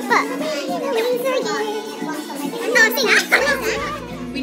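A group of young women laughing and talking excitedly, with high, bright voices, over music playing in the background.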